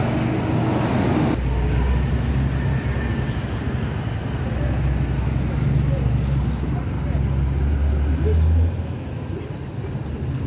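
Night street traffic: engines of passing cars, a tanker truck and motorbikes running close by, with a louder rush of a passing vehicle in the first second or so. A steady low engine rumble then carries on and falls away near the end.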